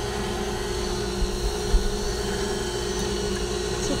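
Electric stand mixer running at a steady speed, its wire whisk beating cake batter in a stainless steel bowl: an even motor hum with a constant tone.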